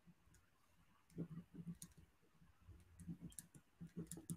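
Near silence: quiet room tone with faint, irregular clicks from computer use on the call, and a few soft low bumps about a second in and again just past three seconds.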